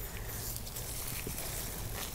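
Steady low background hum, with faint rustling and small ticks of hands pressing potting soil around a root ball in a concrete planter.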